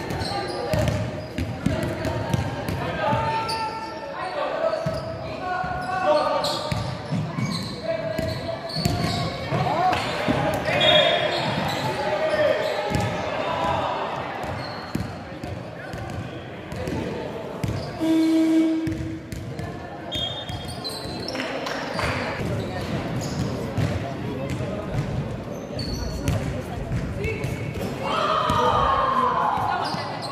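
A basketball bouncing repeatedly on a hardwood gym floor during play, mixed with players' shouts echoing in a large hall.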